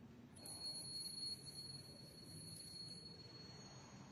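Faint altar bell rung about half a second in, its high clear tones dying away over about three seconds. It marks the elevation of the chalice at the consecration.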